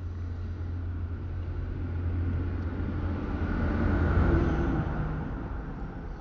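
A steady low rumble that swells to a peak about four seconds in, then fades.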